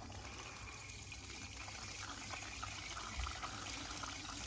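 Faint, steady trickle of hose water running through a miniature hose-driven hydro generator and spilling from its outlet onto wet concrete.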